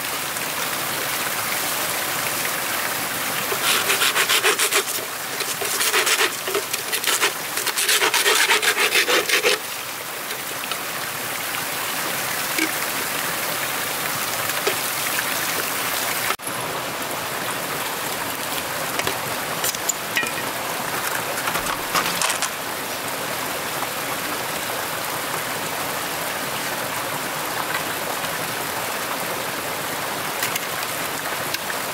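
Wood being worked by hand with quick, rasping back-and-forth strokes in three short bouts during the first ten seconds, over a steady background hiss.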